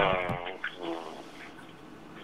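A man's voice over a telephone line trailing off on a drawn-out, falling vowel, then a faint brief murmur and a quiet line.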